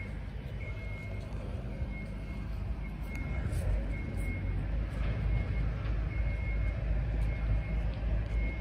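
Low rumble of motor-vehicle traffic on the street, growing louder about halfway through, with a faint high beep repeating roughly once a second.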